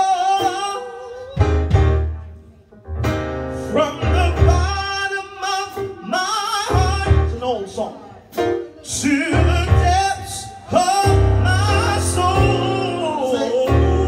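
A man singing a gospel song in drawn-out phrases with sliding pitch, accompanying himself on an electric stage keyboard with deep bass chords.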